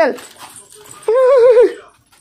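A single short, wavering vocal sound, about half a second long, a little past the middle, following a spoken word at the start.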